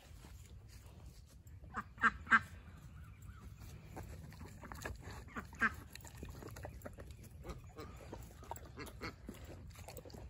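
Domestic ducks quacking: three short quacks in quick succession about two seconds in and one more around the middle. Through the second half come soft mouth clicks and smacking from dogs eating berries out of a hand.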